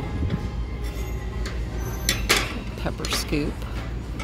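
A ceramic chili-pepper dish being lifted and handled on a wire shelf: a few light knocks and clinks, about two seconds in and again about three seconds in, over a steady low hum.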